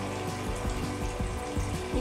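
A few light knocks and clicks of duct tape rolls being handled on a tabletop, over a steady background hum with faint sustained tones.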